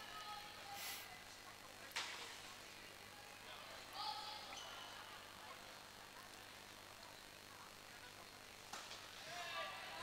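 Quiet indoor sports-hall ambience with faint, distant voices calling out. A single sharp knock comes about two seconds in.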